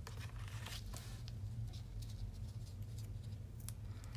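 Hands handling cardstock: faint rustling and a few small ticks as twine is pressed down under a strip of tape on the back of a card, over a steady low hum.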